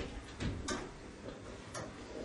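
Faint, scattered ticks and short scratches of a marker against a whiteboard, a handful of brief strokes over the two seconds.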